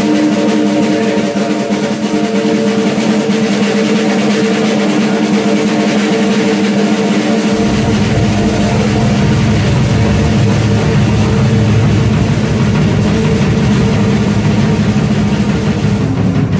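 A live band playing, with a drum kit under a steady held chord. A deep bass part comes in about halfway through.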